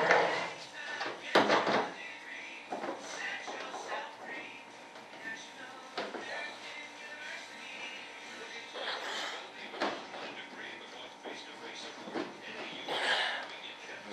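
A few light knocks and clicks from hands working a clamp inside a model jet fuselage, the sharpest about a second and a half in, over faint background voices and music.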